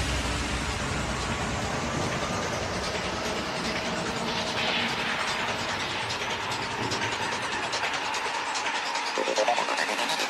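Psytrance track in a breakdown: the kick and bass fade away, leaving a dense hissing, fast-ticking synth texture. A new repeating synth riff starts near the end.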